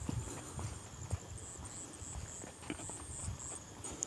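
Crickets chirping steadily at night, with faint, irregular footsteps on the ground.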